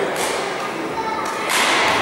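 Two sharp cracks of badminton rackets striking a shuttlecock during a rally, one just after the start and the second about a second and a half in.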